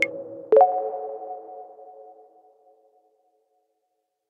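Last notes of the podcast's electronic outro jingle: a brief high ping, then a final synthesizer chord struck about half a second in that rings on and dies away over about two seconds.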